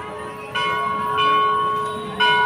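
Temple bell struck twice, about half a second in and again just after a second, each strike ringing on with a steady tone.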